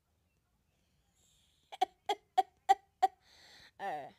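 A boy giggling: starting about halfway in, five short high-pitched bursts about three a second, then a hissing breath and a gliding voiced sound at the end.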